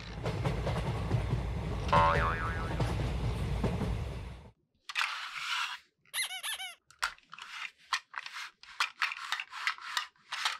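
A rushing, rumbling noise for about four and a half seconds, then a short springy boing sound, then a string of quick plastic clicks and clacks as the rings of a plastic stacking toy are handled.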